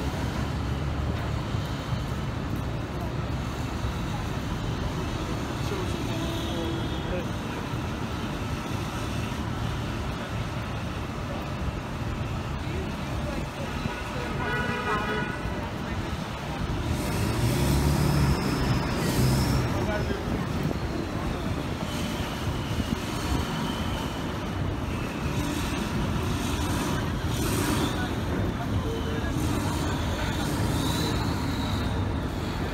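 Busy city street ambience: steady traffic noise and the chatter of passing pedestrians. A short horn toot comes about fifteen seconds in, and a louder vehicle passes a few seconds later.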